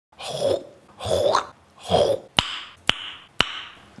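A man coughs three times, each cough lasting about half a second. Three sharp clicks follow, about half a second apart.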